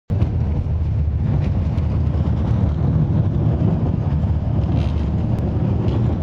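Steady low rumble of a moving public-transport vehicle heard from inside the passenger cabin, with a few faint clicks and rattles.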